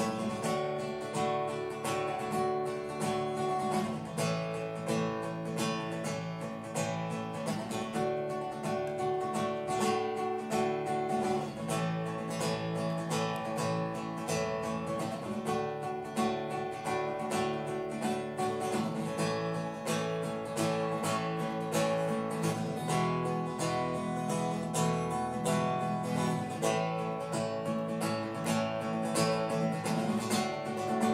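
Acoustic guitar strummed steadily, with electric bass notes underneath, in an instrumental stretch of a live rock song without vocals.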